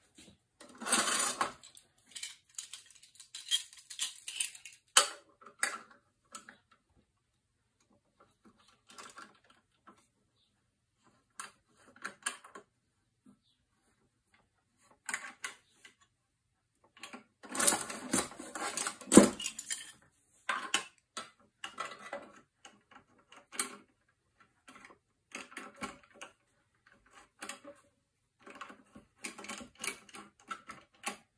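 Steel F-clamps being fitted and screwed tight on a wooden jig: scattered metallic clicks, knocks and rattles, with a short clatter about a second in and a longer, louder run of knocks a little past halfway.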